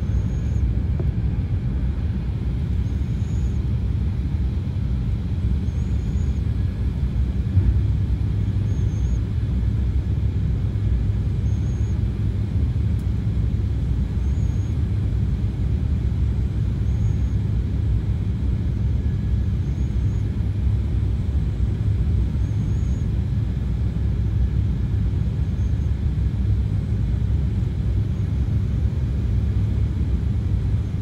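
Steady low rumble of jet airliner cabin noise in cruise flight, heard from inside the passenger cabin.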